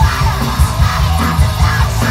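Loud live punk rock heard from the crowd: distorted electric guitars, bass and fast drums, with a yelled vocal over them.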